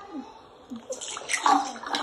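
Water being poured out and splashing, heard through a phone's speaker as a clip plays back, growing louder and busier over the second half, with brief voice sounds.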